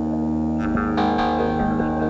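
Electronic synthesizer music: a sustained, layered low drone, with bright plucked-sounding tones that enter about a second in and slowly fade.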